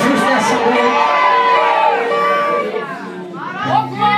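A congregation of many overlapping voices calling out and praying aloud together at a Pentecostal service. Steady held notes come in near the end.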